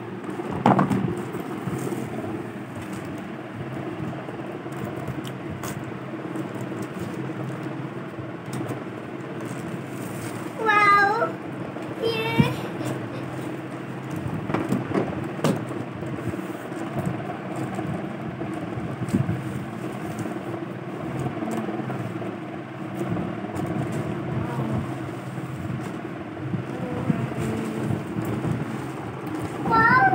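A cardboard toy box handled and opened, with scattered knocks and clicks over a steady background hum. Two short high calls that glide up and down come about eleven and twelve seconds in.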